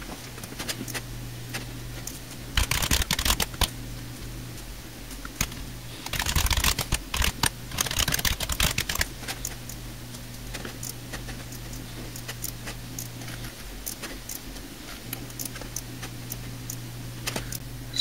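Computer keyboard typing and mouse clicks, in two short flurries and scattered single clicks, over a steady low hum.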